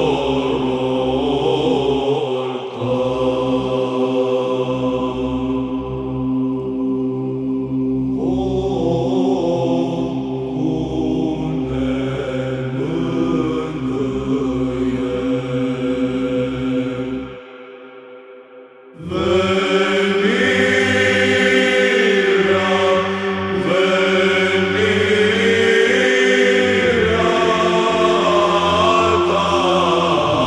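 Orthodox Byzantine (psaltic) chant sung in Romanian in the fifth mode: a melismatic melody over a held drone (ison). It breaks off briefly about two-thirds of the way through, then resumes.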